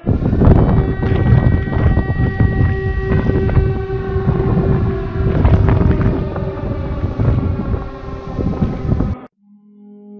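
Loud, dense low rumble under a steady, held horn-like tone, with a few other tones sliding downward, cutting off suddenly about nine seconds in.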